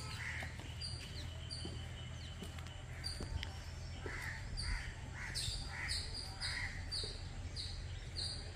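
Birds calling outdoors: a short high note repeated about twice a second, coming more often in the second half, with rougher, lower calls at irregular moments. A steady low hum runs underneath.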